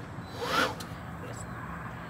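A brief vocal sound with a rising pitch about half a second in, then faint steady background noise.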